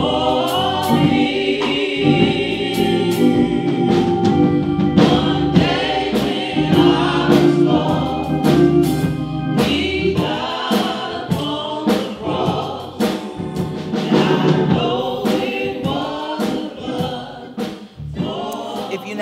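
Gospel choir singing with instrumental backing and a steady pulse of struck beats.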